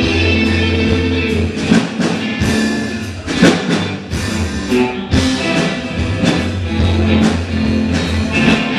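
Live rock band playing: distorted electric guitars and bass over a drum kit, with drum and cymbal hits cutting through. The loudest hit comes about three and a half seconds in.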